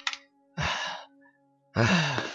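Two heavy, strained breaths from a man in chest pain, the second starting just under a second and a half in, over a soft held note of background music.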